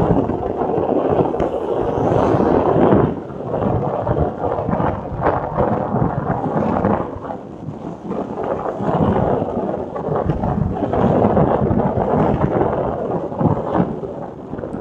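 Wind buffeting the microphone of a vehicle moving at speed, a loud, gusty rumble that swells and dips every second or so, with road noise underneath.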